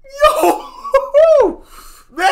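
A man laughing in two short bursts, the second sliding down in pitch.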